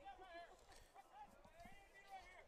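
Faint background voices of people talking, with no clear words.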